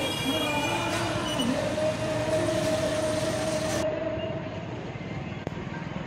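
Street traffic noise with voices, and a long steady horn-like tone held for about two seconds in the middle. About two-thirds of the way in the sound cuts to a quieter, duller recording.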